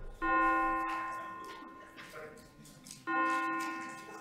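A bell tolling: two strokes about three seconds apart, each ringing on and slowly fading.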